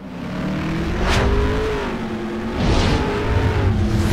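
Outro sound effect: a deep rumbling drone with a wavering tone running over it, and two whooshes sweeping past, about a second in and again near three seconds, like a vehicle speeding by.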